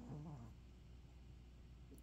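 Near silence: room tone with a steady low hum, and a brief faint murmur that falls in pitch in the first half second.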